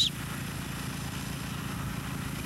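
Engine running steadily in the background of a roadwork site, a low even rumble.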